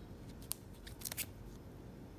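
A trading card in a rigid plastic top loader handled and turned over in the fingers: a few light clicks and taps of plastic, one about half a second in and three close together around a second in.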